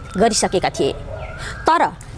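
A woman speaking Nepali, reading a news-style introduction, with a brief pause partway through.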